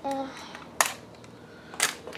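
Toy packaging being torn open by hand: two short, sharp crackles about a second apart.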